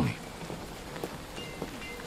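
Steady, quiet background hiss of outdoor ambience, with a few faint, short high tones about halfway through and again near the end.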